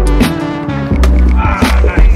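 Background music with heavy bass and a regular beat.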